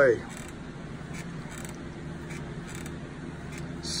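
A steady low hum with faint, scattered creaks and small clicks.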